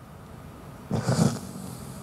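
A man sobbing close into a handheld microphone: after a moment of quiet hum, a choked, rough sob with a hiss of breath starts about a second in.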